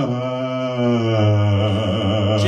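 A five-man a cappella group singing held notes in close harmony, with a low bass note swelling beneath the chord about a second in.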